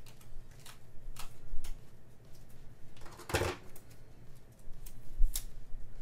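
Small craft scissors snipping through sticker paper: a few sharp separate snips, with one louder, longer handling noise a little past halfway.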